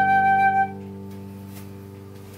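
Concert flute holding the last long note of a slow hymn tune, which stops a little over half a second in. A sustained accompaniment chord under it rings on and slowly fades.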